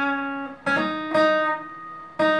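Acoustic guitar playing single notes on the second string: a ringing note fades, a new note is plucked about two-thirds of a second in, and just past a second it is hammered on to a higher note that is left to ring and fade.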